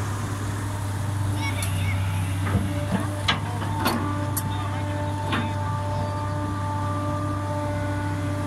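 Excavator's diesel engine running steadily while its bucket works into an earth bank, with several sharp knocks from the bucket and clods in the middle and a steady whine coming in about halfway.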